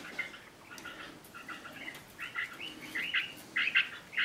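Small birds chirping in quick, repeated bursts, sparse at first and busier in the second half.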